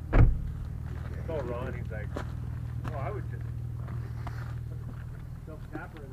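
Muffled bits of conversation in short phrases over a steady low hum, with a sharp thump just after the start.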